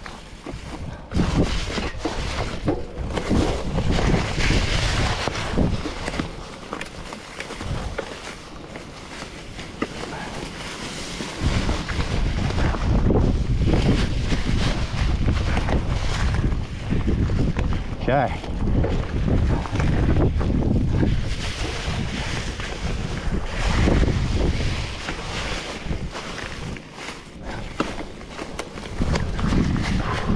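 Mountain bike riding over a rocky, leaf-strewn trail: tyres and bike clattering over rock and dry leaves, with wind rumbling on the microphone.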